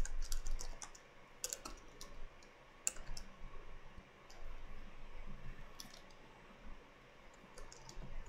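Keystrokes on a computer keyboard: an irregular scatter of light clicks, closer together in the first few seconds and sparser after.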